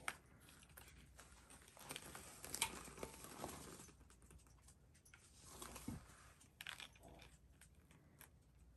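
Faint rustling and light ticks of hands handling and arranging craft pieces, a glitter bow and ribbon on a plaque, in a near-silent room, with a few short bursts spread through it.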